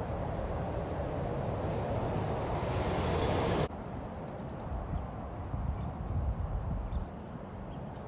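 Outdoor road traffic noise that swells as a vehicle draws near, cut off suddenly about four seconds in. After that a quieter outdoor background with a few faint, short, high chirps.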